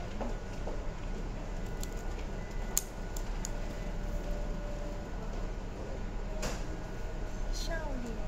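Steady low room hum with faint, quiet voices near the start and near the end. Two sharp clicks, the first about three seconds in and the second more than six seconds in.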